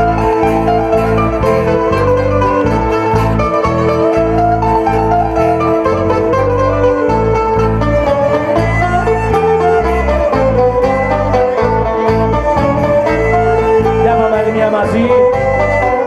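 Instrumental break in a live Greek folk song: a bouzouki picks the melody over strummed acoustic guitar and a steady pulsing bass.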